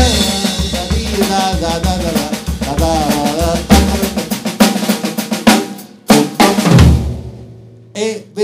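Drum kit played in a paso doble passage: a snare roll and fast snare and bass drum strokes, with a man's voice singing a wavering melody over the first half. The playing ends in a last hit about seven seconds in that rings out and dies away.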